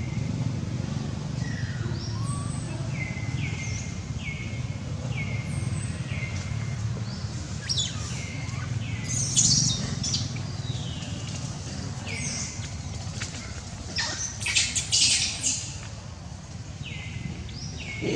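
A bird calling over and over, each call a short note falling in pitch, about one a second, over a steady low outdoor hum. There are louder, brief scratchy bursts about nine seconds in and again around fifteen seconds in.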